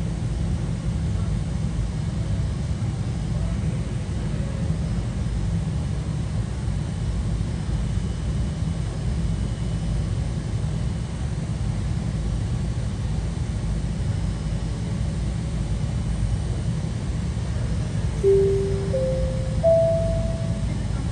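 Steady low rumble of airport ambience, then near the end a three-note rising public-address chime, the signal that a flight announcement is about to follow.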